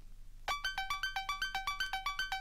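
New wave track: a fast synthesizer arpeggio of short, bright, quickly decaying notes, about eight a second, cycling up and down. It kicks in about half a second in, after a brief gap.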